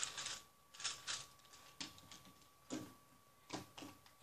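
Plastic gearball puzzle being twisted in the hands: irregular, short clicks and clatters of its geared pieces turning.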